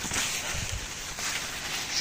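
Soft rustling of leaves and handling noise, with a few dull low thumps about half a second in.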